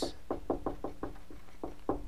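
Marker writing on a wall-mounted whiteboard: a quick, irregular run of short taps and knocks as the tip strikes the board with each stroke, one near the end louder than the rest.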